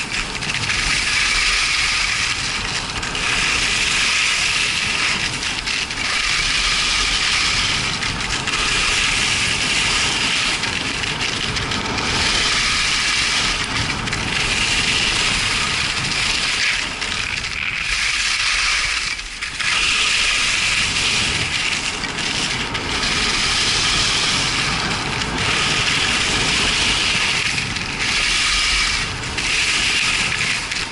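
Skis sliding and carving on packed snow during a downhill run: a continuous scraping hiss that swells and eases with each turn, every two to three seconds, mixed with wind rushing past the microphone.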